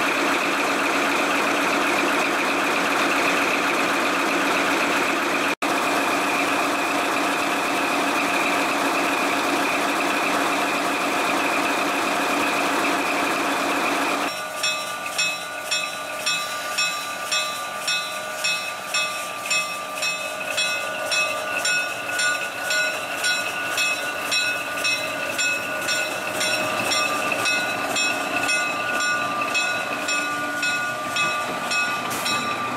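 Diesel engine of a 1954 Baldwin RS-4-TC switcher locomotive running steadily, heard close up at its open engine-compartment doors. There is a brief break in the sound about six seconds in. About halfway through, the sound changes to the locomotive rolling past, its wheels clacking over rail joints a little more than once a second under steady high whining tones.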